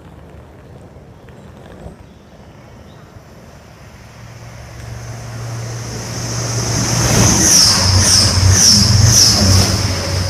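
A Class 180 Adelante diesel multiple unit runs in along the platform. Its steady engine hum starts about four seconds in and grows louder. In the last few seconds, as the train draws alongside, a high rhythmic sound repeats about twice a second.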